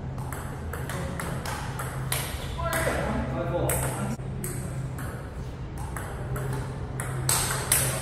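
Table tennis rally: the ball clicking off the paddles and the table in a quick, uneven series of sharp taps, a few each second. A steady low hum runs beneath.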